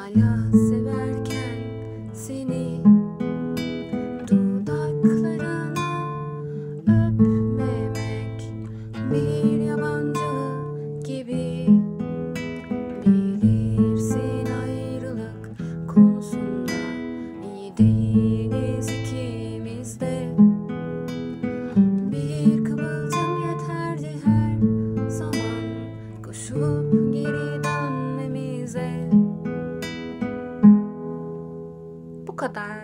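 Acoustic guitar fingerpicked slowly in arpeggios, one pattern per chord through A minor, E major and D minor, a new chord about every two seconds, with a soft voice singing along.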